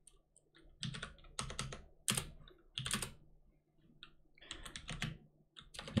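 Typing on a computer keyboard: short, irregular bursts of keystrokes with brief pauses between them.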